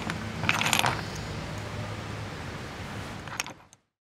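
Pieces of gem silica chrysocolla rough clicking and clinking against each other as a hand sets a piece back on the pile. There is a cluster of clicks about half a second in and a couple more near the end, over a low steady hum, and the sound fades out just after.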